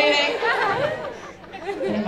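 Voices: people talking and chattering in a crowd, with no clear words.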